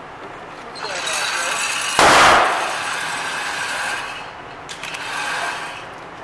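A single gunshot on the range: one loud, sharp report about two seconds in, over a steady hiss.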